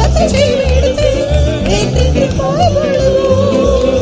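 A devotional song: a singing voice holds a long, wavering note with heavy vibrato over a steady low beat.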